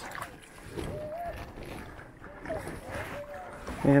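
Water sloshing and lapping in the shallows at the lake's edge, with low rumbling wind noise on the microphone.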